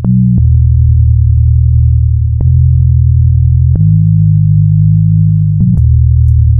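Electronic music: loud, sustained synthesizer bass notes change pitch every second or two, with a click at each change and a faint higher tone held above, and no drums.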